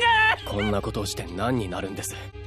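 Anime dialogue over background music: a voice shouts "Stop!" and then gives short strained cries, over a steady low drone of music.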